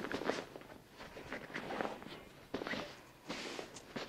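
Bed linen rustling and swishing as a sheet is pulled tight and smoothed over a hospital mattress, in a string of irregular brushes.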